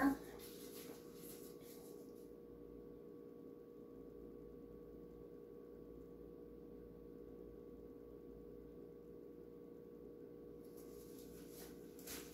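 Quiet room tone with a faint, steady hum and no distinct sounds.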